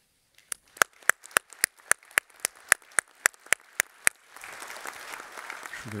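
Applause after a speech: first one person clapping close to the microphone in a steady beat, about four claps a second, then, from about four seconds in, the wider applause of the audience as an even wash of many hands.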